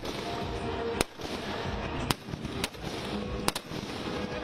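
Firecrackers in a burning Ravana effigy going off as single sharp bangs at irregular intervals, two in quick succession near the end, over music playing behind.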